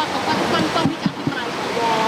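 A man speaking Thai in short broken phrases into a cluster of reporters' microphones, over a steady rushing hubbub from the surrounding crowd of reporters. His voice comes back clearly near the end.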